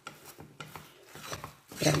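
Spatula stirring and scraping a thick chicken-and-flour croquette mixture around a stainless steel pan: soft, irregular scrapes with a few light knocks. The flour is being worked in to bring the mixture to a firm, rollable dough.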